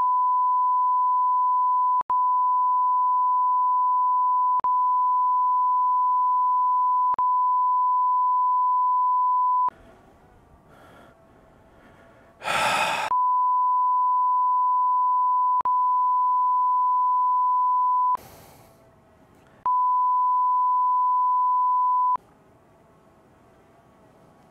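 Censor bleep: a steady, high, single-pitch beep held for several seconds at a time in three long stretches with brief cuts, blanking out a run of swearing. A short loud burst of sound falls in the gap before the second stretch.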